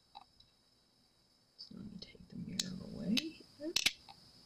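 A few sharp clicks of hands and fingernails handling a small acrylic mirror piece, over a low mumbled voice in the second half.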